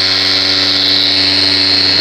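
Random orbital polisher running steadily with its foam pad pressed against a car's painted hood while buffing out swirl marks: an even motor hum with a high whine over it.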